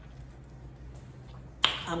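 Quiet room tone with a faint low hum, then one sharp, loud click about a second and a half in, just before a woman starts speaking.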